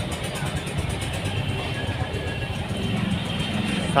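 Busy market street ambience: a steady rumble of traffic and motor noise with faint, indistinct voices of passers-by.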